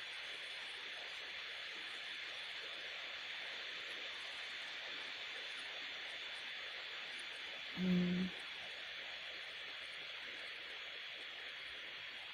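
Steady low hiss of a recording's background noise, with a faint thin steady tone in it. About eight seconds in, a short vocal sound from a person's voice, like a brief hum.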